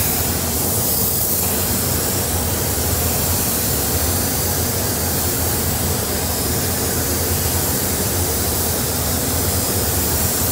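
Air spray gun hissing steadily as it sprays red automotive paint onto the car's body, over the steady low hum of the paint booth's ventilation.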